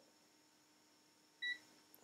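A single short electronic beep from an HT Instruments HT65 digital multimeter about one and a half seconds in, as a press of its button is acknowledged and the display backlight comes on.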